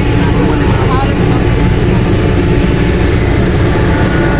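Passenger ferry's engines running, a steady loud low rumble heard from the open deck, with faint voices underneath.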